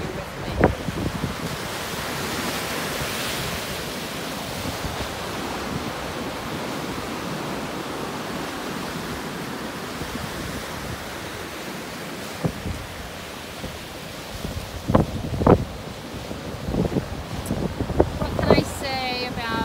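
Sea surf breaking and washing among rocks on a cobble beach, a steady rushing that swells for a few seconds early on. There are a few short low thumps: one near the start and several in the last few seconds.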